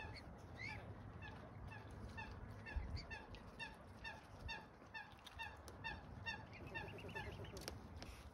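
A bird calling in a steady series of short, clear notes, about three a second, the calls coming faster near the end. A couple of soft low thumps come in between.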